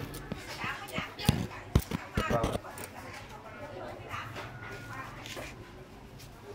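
Indistinct voices with a few sharp knocks and clicks; two loud knocks come close together about a second and a half in.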